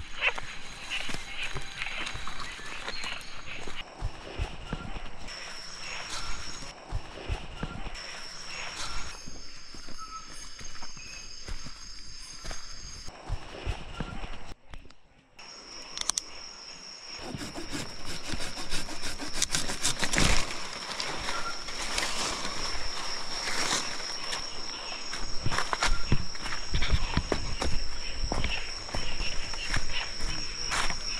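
Night chorus of insects and frogs in a tropical jungle, with a steady high-pitched trill that breaks off and comes back, over close rustling and knocks of camp gear being handled. The sound drops out briefly about fifteen seconds in.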